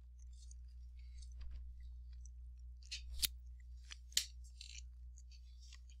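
A person chewing a piece of pecan, faint, with two short sharp crunches about three and four seconds in.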